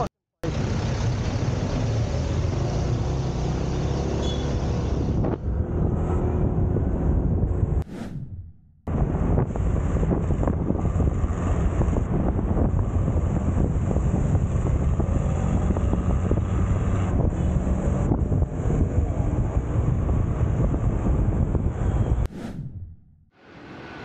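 Riding noise from a motor scooter in traffic: wind buffeting the microphone over the bike's engine and passing vehicles. It breaks off briefly just after the start and again about eight seconds in.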